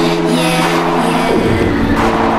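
UK hardcore dance music playing from a DJ mix, with sustained synth tones and a falling pitch sweep just past halfway.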